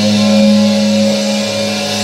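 An amplified electric guitar note held and left to ring out, heard as a steady low drone with a faint higher tone that dips slightly in pitch.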